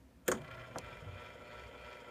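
Autotrol 700 Series water softener timer motor starting with a sharp click a quarter second in, then running with a steady whirring hum as it turns the control valve's gears, with a fainter click about half a second later: the immediate regeneration cycle has begun.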